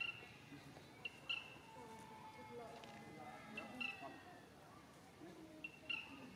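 A bird calling outdoors: a short, high two-note chirp, a faint note then a louder one, repeated four times about every two seconds, with faint voices in the background.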